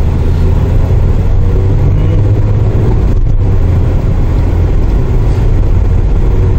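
Steady low drone of engine and road noise inside the cabin of an LPG-fuelled Daewoo Rezzo minivan being driven.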